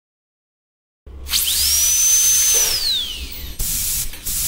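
High-speed dental drill whine: starting about a second in, it spins up to a steady high pitch over a hiss, holds, then winds down. A short burst of hiss follows near the end.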